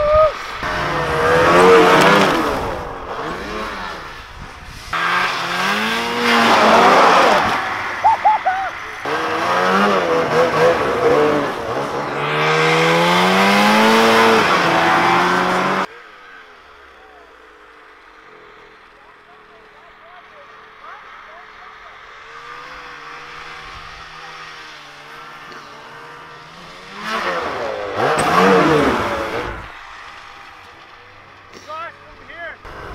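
Snowmobile engines revving up and down as sleds ride past on the snow. The engines are loud and close through the first half, then fainter and distant for about ten seconds, before another sled passes close near the end.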